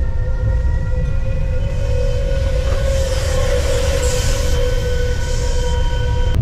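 Heritage narrow-gauge steam train running, a steady low rumble with a hiss that swells and fades in the middle. Over it sounds one long, steady, multi-note whistle-like tone that cuts off abruptly near the end.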